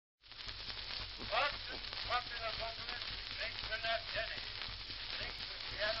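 Scratchy old record playing: a steady hiss and crackle of surface noise over a thin, muffled intro of pitched instrument notes. A singer comes in right at the end.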